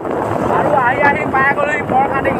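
Wind buffeting the microphone of a camera held by a rider on a moving motorcycle, a steady rushing noise, with a man's voice talking over it from about a third of the way in.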